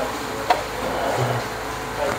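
Steady room hum, with one sharp click of metal serving tongs about half a second in as vegetables are picked into a plastic basket.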